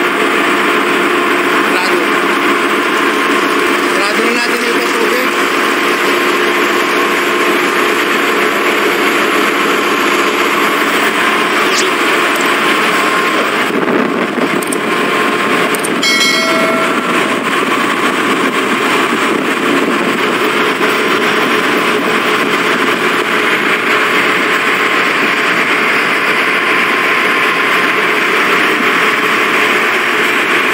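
Loud, steady machinery noise of a ship's engine room. About halfway through, a short run of electronic beeps steps down in pitch.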